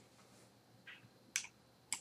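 Quiet room tone broken by a few short, sharp clicks: a faint one about a second in, a sharper one shortly after, and another at the very end.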